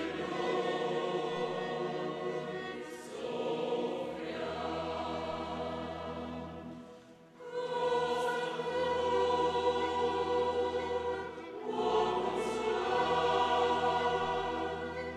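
Mixed choir singing a slow sacred piece in long held phrases, accompanied by a chamber orchestra with steady low bass notes. Phrases break and restart about every four seconds, with a brief dip in loudness about seven seconds in.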